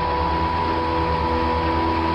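Miniature wind tunnel's fan running: a steady rush of air with a constant high whine over it.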